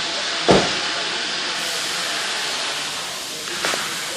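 Steady hiss of recording noise with a single thump about half a second in.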